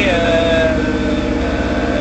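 Sailboat's inboard diesel engine running steadily under way, heard from inside the cabin as an even low drone. A man's voice trails off in a drawn-out hesitation during the first half-second.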